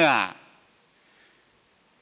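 A man's spoken word trails off in the first moment, then near silence: quiet room tone in a pause between phrases.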